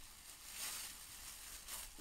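Soft rustling of a black plastic bin bag being handled, with short noisy swells about half a second in and just before the end.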